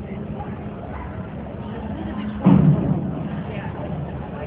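A diver hitting the pool water: one sudden loud splash about two and a half seconds in, dying away over about half a second, over a steady low hum.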